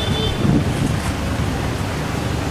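Steady wind noise on the microphone over a low rumble of traffic, with a brief faint high tone right at the start.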